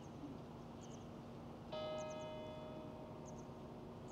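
Quiet outdoor hush with faint, short, high-pitched chirps repeating every half second or so. A little under halfway through, a single bright chime-like tone rings out suddenly and fades away over about a second.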